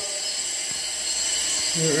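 Water running steadily from a tub faucet into a freestanding bathtub, an even splashing hiss.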